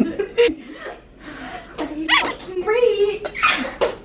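Young women laughing, with short bits of voice mixed in.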